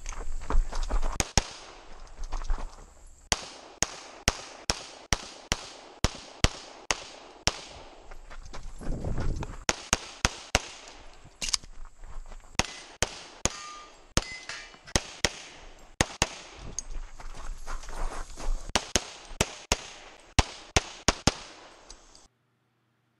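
Rapid pistol fire from a Springfield Armory XDm 5.25 in .40 S&W loaded to major power factor: more than two dozen sharp shots, mostly in quick pairs, with a pause of about a second and a half for a magazine change a little past halfway.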